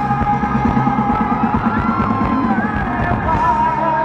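Live rock band playing: a male lead vocal holding long notes over electric guitar and busy drums. The drums drop out at the very end, leaving sustained chords.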